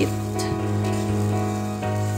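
Background music with steady held notes, over faint sizzling from duck feet being stir-fried in a wok.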